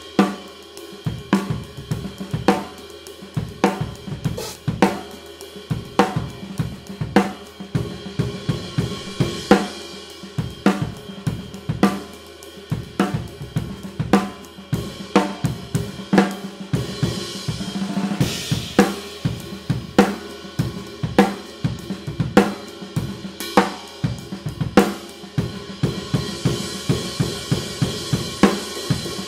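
Drum kit played with sticks in a steady groove: snare, bass drum and hi-hat under a thin, fully lathed 22-inch Meinl Byzance Jazz Big Apple ride cymbal. The cymbal wash swells for a couple of seconds around the middle.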